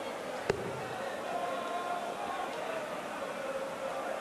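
A steel-tip dart striking a bristle dartboard, a single sharp thud about half a second in, over the steady murmur of an arena crowd.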